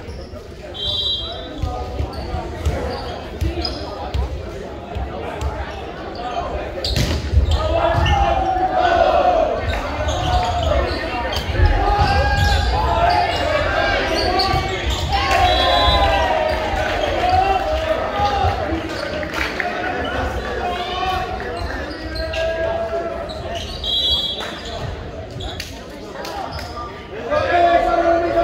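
Players' voices calling and chattering in a school gymnasium, with volleyballs thudding on the court floor. The voices are loudest from about 7 to 20 seconds in.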